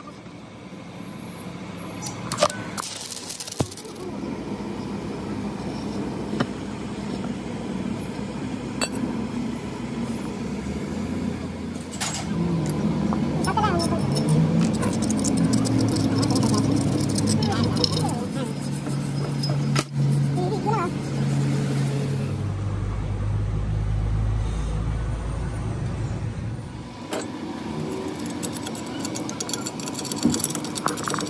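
People talking over workshop noise, with a few sharp metal clinks.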